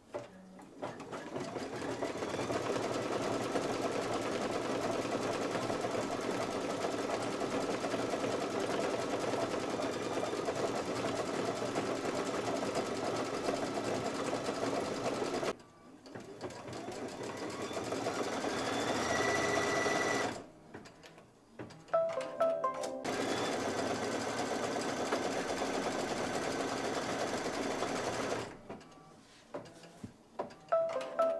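Computerized embroidery machine stitching steadily. About halfway through it stops, then a rising whine builds for a few seconds as the hoop travels to a new position. After a short pause with a few clicks, stitching resumes and stops near the end.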